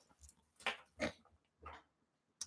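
A man's faint, breathy chuckles and a soft spoken "right", heard as three short bursts with quiet between them.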